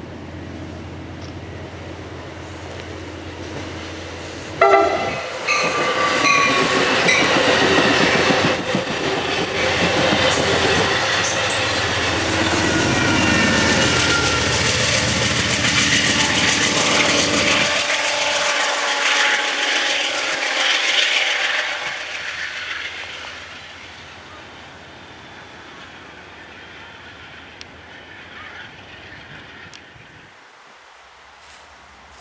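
Amtrak passenger train hauled by a GE Genesis diesel locomotive approaching. Its air horn sounds suddenly about four seconds in, with several sustained blasts. The train then passes close by with loud engine and wheel-on-rail noise, and the engine rumble cuts off after the locomotive goes by; the cars' rolling noise fades away over the next few seconds.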